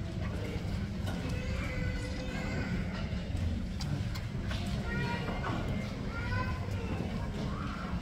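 Indistinct chatter of many voices, adults and children, in a school hall, over a steady low rumble.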